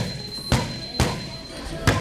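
Boxing gloves striking focus mitts: four sharp smacks, irregularly spaced about half a second to a second apart, the last one the loudest.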